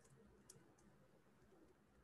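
Near silence, with a few faint clicks of a stylus tapping on a tablet screen while writing; the clearest comes about half a second in.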